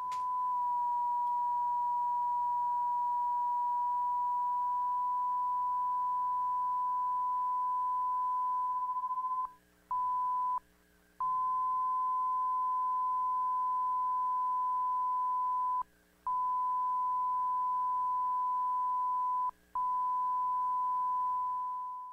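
Steady 1 kHz sine tone from a self-oscillating voltage-controlled filter chip of a Roland GR-700 guitar synthesizer, its resonance turned up into feedback and its cutoff tuned to 1 kHz for calibration. The tone drops out briefly four times, about halfway through and again near the end.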